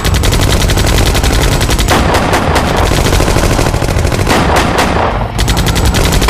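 Sustained automatic gunfire: rapid shots in long strings, with short breaks about two seconds in and again just past five seconds.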